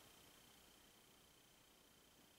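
Near silence: faint room tone with a steady hiss and a faint high hum.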